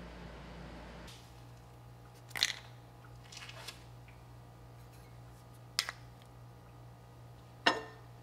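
A few sharp clinks and knocks as the glass lid, a plastic basket and copper tongs are handled at a slow-cooker pickle pot used to clean flux off soldered silver. The loudest clinks come about two and a half seconds in and near the end, over a low steady hum.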